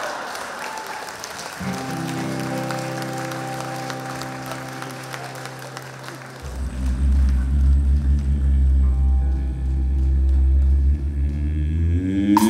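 Crowd applause dies away as a live country band comes in with long held chords about two seconds in. A deep bass note joins about six seconds in and holds under the chords.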